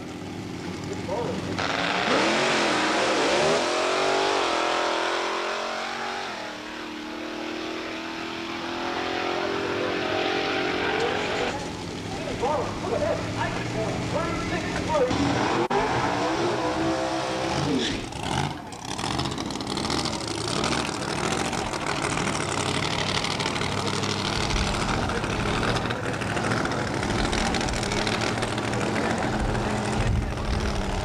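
Doorslammer drag cars' V8 engines revving hard with tyres spinning in a burnout for the first several seconds. This is followed by sharp up-and-down throttle blips, then a loud, steadier running engine in the second half.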